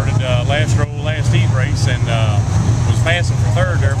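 A man talking over a steady low rumble of race car engines running at the track.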